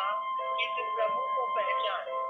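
Background music of steady held tones, with a voice speaking over it.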